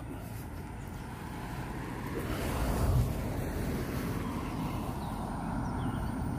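A car passing on the road, its tyre and engine noise swelling to its loudest about three seconds in and then easing, over a steady low rumble of traffic and wind.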